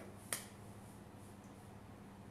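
A single sharp click about a third of a second in, then faint room tone with a low steady hum.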